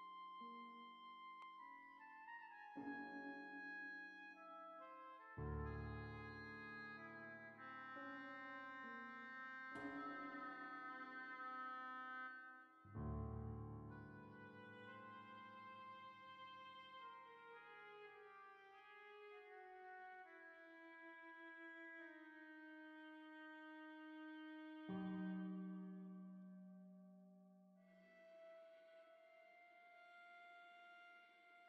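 Quiet, slow contemporary chamber music: sustained, overlapping woodwind and string tones from oboe, flute and viola. Several deep struck prepared-piano notes ring out and die away beneath them.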